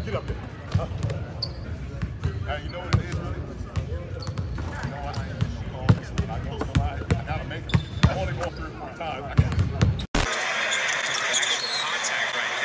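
Basketballs bouncing on a hardwood court in an empty arena: irregular low thuds under indistinct men's talk. About ten seconds in, the sound breaks off and gives way to a steady roar of game crowd noise.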